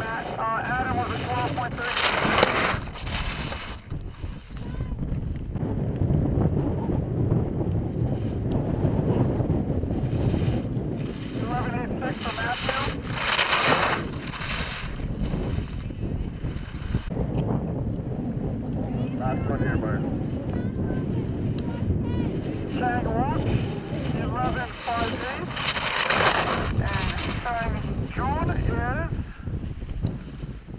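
Wind buffeting the microphone, with the hiss and scrape of ski edges carving on firm snow as slalom racers pass close by. Three louder hissing passes stand out, the first about two seconds in, one near the middle and one near the end. Faint distant voices are also heard.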